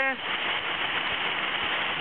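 Steady rush of a small canyon waterfall cascading over boulders.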